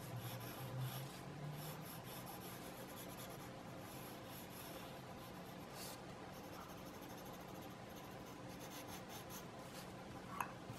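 Faint scratching of an HB graphite pencil rubbed across sketch paper in short shading strokes.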